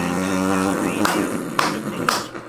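A voice holding one long drawn-out note that stops just under a second in, followed by two sharp clicks.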